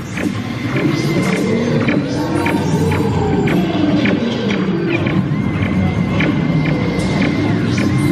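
Space-themed dark-ride soundtrack music with slow sweeping synth tones, over short electronic zaps about twice a second from the ride's laser-blaster shooting game as targets are hit and the score climbs. A thin high electronic tone sounds in two stretches.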